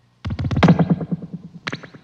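Experimental film soundtrack: a rapid clattering run of sharp percussive strokes, about ten a second, starting a quarter second in and fading away, then a short burst of a few more strokes near the end.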